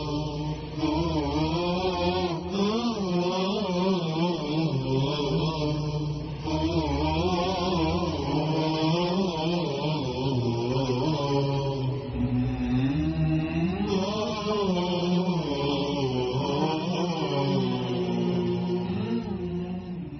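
Unaccompanied Islamic devotional chant in the style of a nasheed: a voice singing a wavering melody with long, bending notes over a steady low drone.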